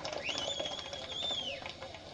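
A single high whistle-like note: it slides up, holds steady for about a second and a half, then drops away.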